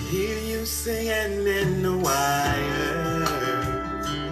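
Recorded country song playing back, a band arrangement with guitar and held, gliding melodic lines.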